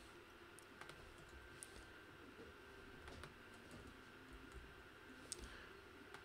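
A handful of faint, scattered computer keyboard keystrokes over near-silent room tone, as single characters are typed into code.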